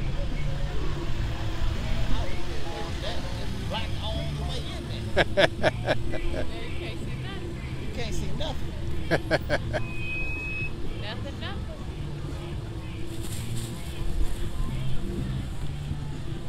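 Parade vehicles, a pickup truck and an SUV among them, driving slowly past at close range with their engines running, over the chatter of roadside spectators. Music with a bass line plays underneath, there are short shouts around five and nine seconds in, and a brief high whistle-like tone sounds about ten seconds in.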